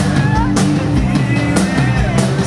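Live rock band playing: electric guitars over a drum kit keeping a steady beat, amplified through an outdoor PA.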